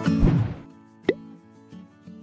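Background music ending on a low hit with a swish, then a single short pop about a second later, over a faint held chord: the sound effects of a channel logo sting.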